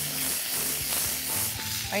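Shrimp and chopped garlic sizzling in a hot frying pan.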